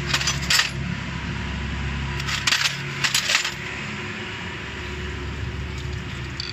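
Metal hand tools clinking and tapping against the timing-belt tensioner and pulley hardware of a diesel engine, in two clusters of sharp metallic clicks: one at the start and one from about two to three and a half seconds in.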